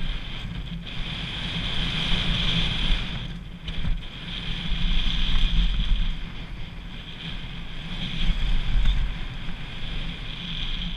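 Wind buffeting an action camera's microphone while a mountain bike rolls fast down a dirt trail, a rumble that swells and eases with speed, with a steady hiss of tyres on dirt.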